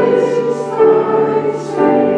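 Congregation singing a hymn together with piano accompaniment, the sung notes held and moving from one to the next every half second or so.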